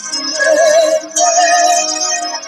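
A woman singing worship, holding two long wavering notes with a brief break just after a second in, over sustained instrumental backing.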